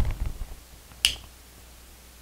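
Small SPST rocker switch flipped by hand: one short, sharp click about a second in.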